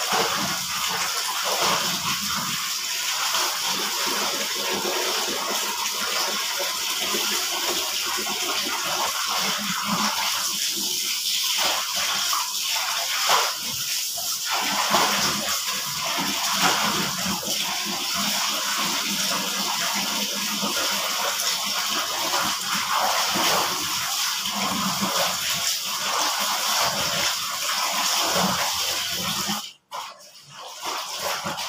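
Clothes being hand-washed in a plastic basin: wet garments lifted, dunked and scrubbed, with water splashing and streaming back into the basin in a continuous wash of sound. It cuts off abruptly near the end.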